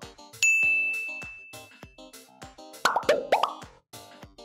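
A single high bell-like ding sound effect about half a second in, ringing out and fading over a second or so, then a quick run of sliding, popping cartoon sound effects near the end, all over background music with a steady beat.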